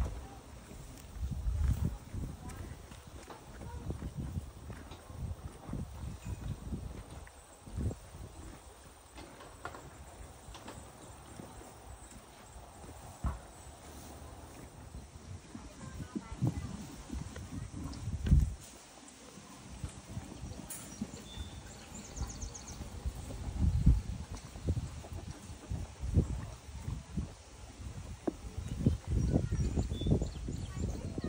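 Horses, then sheep, eating hay close by: rustling hay and uneven low thumps as they feed and shift their hooves, with a few louder thuds.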